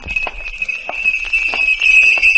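A Santa Claus's handbell ringing rapidly and continuously as a radio sound effect. It starts at once and grows louder.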